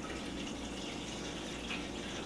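Water pouring steadily from a plastic pitcher into the bottom of a roasting pan.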